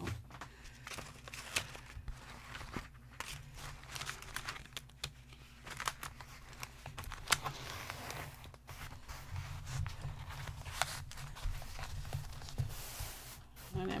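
Plastic film on a diamond painting canvas crinkling and rustling as hands move the canvas and slide a roll in under its edge, with scattered light clicks and taps.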